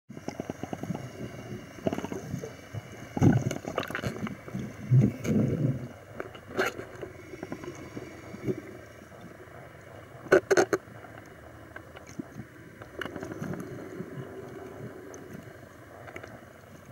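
Muffled underwater sound picked up by a submerged camera: irregular water sloshing and bubbling, with a few sharp knocks about a third of the way in and again at about two thirds.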